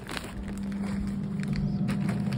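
Air fryer running with a steady low hum from its fan, with a few light clicks of handling.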